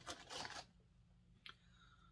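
Brief crinkle of a foil-lined crisp packet as a hand reaches in for a chip, lasting about half a second, then near quiet with one small click.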